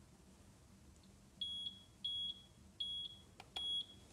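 Four short, high-pitched beeps, a little over half a second apart, from a seca MyCardioPad touchscreen ECG machine as its screen is tapped to enter patient data.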